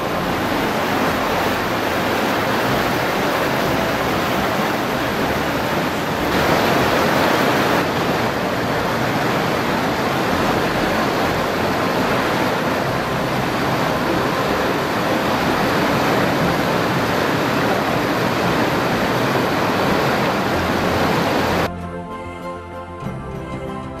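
Steady rush of a rocky mountain stream, water running over stones, a little louder for a second or two about six seconds in, then cutting off abruptly just before the end.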